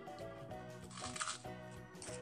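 Background music with a steady plucked-sounding melody. About a second in comes a brief, crisp crackle lasting about half a second, from crispy food or its packaging being handled.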